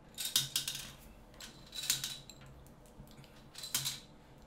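Plastic Connect Four checkers clicking: a disc dropped into the upright grid and loose pieces handled, in three short clusters of light clicks about a second and a half apart.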